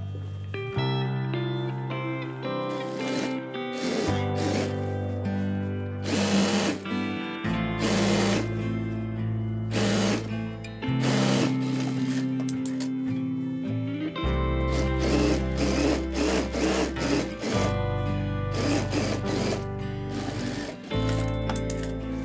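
Background music with a changing bass line throughout, over an industrial single-needle lockstitch sewing machine stitching in several short runs of a second or two each.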